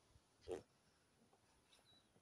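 A single short throat sound from a man, about half a second in, against near silence.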